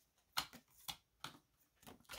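Paper prop banknotes being picked up off a stack and handled: a few faint, short rustles and taps, about four in two seconds.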